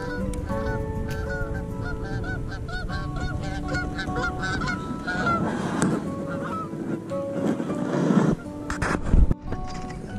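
Geese honking over and over, two or three short hooked calls a second, over background music. A sharp knock comes near the end.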